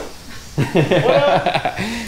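A man laughing: a run of short chuckles that starts about half a second in.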